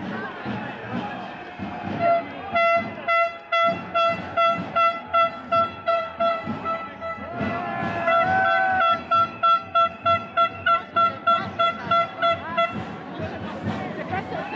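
A horn tooted in a rhythmic run of short blasts on one pitch, two or three a second, starting about two seconds in, with one longer held note partway through. Chatter of a marching crowd runs underneath.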